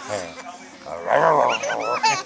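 A baby's high-pitched laughter and squeals, loudest in a burst from about a second in.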